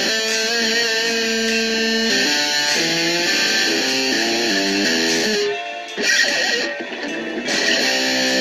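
Homemade Les Paul Junior-style electric guitar played single notes in a picked melodic line, each note ringing into the next. About three-quarters through the line breaks off briefly, with a sharp pluck and a few muted, scratchy strokes before the notes pick up again.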